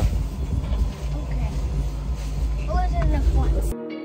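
Uneven low rumble of outdoor background noise on a phone microphone, with a faint voice about three seconds in. Near the end it cuts off suddenly and steady music tones begin.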